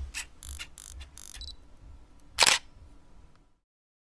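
Camera sound effect: a quick run of small mechanical clicks and whirring over the first second and a half, then one loud single-lens reflex shutter click about two and a half seconds in.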